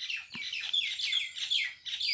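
A small bird chirping: a rapid run of short, high, downward-sweeping chirps, about four a second.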